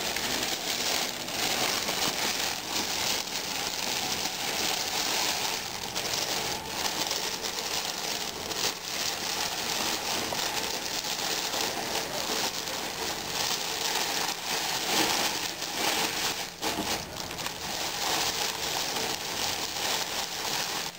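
Clear cellophane crinkling continuously as it is wrapped around a gift basket and gathered and twisted at the top by hand, a dense run of small crackles.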